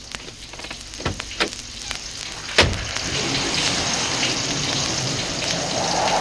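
Sound effects from a 1977 dramatized ghost-story record: a few faint clicks and two soft knocks, then one sharp bang about two and a half seconds in, which fits a car door being shut. After the bang a steady hiss sets in and holds.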